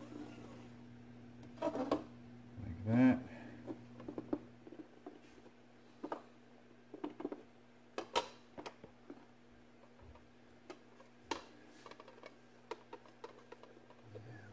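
Scattered light clicks and taps of a marker, ruler and plexiglass sheet being handled on a wooden workbench, over a steady low electrical hum. A brief pitched sound about three seconds in is the loudest moment.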